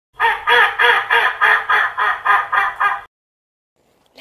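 A run of about ten duck quacks at an even pace of about three a second, stopping suddenly about three seconds in.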